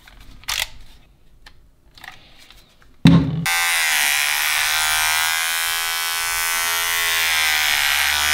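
Electric hair clipper: a few light plastic clicks as it is handled with its comb guard, then about three seconds in it switches on and buzzes steadily while cutting hair at the back of the neck. The pitch dips slightly in the middle of the run.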